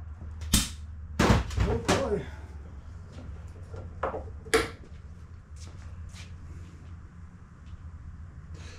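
Sharp metallic knocks and clanks of hand tools and mower parts being handled during reassembly of a push mower: about five distinct strikes in the first five seconds, then a few lighter clicks, over a low steady hum.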